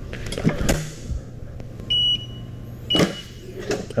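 Heat press being clamped down over a hoodie, with a few knocks. About two seconds in, the press's control panel gives a short, high electronic beep, and a fainter one follows about a second later.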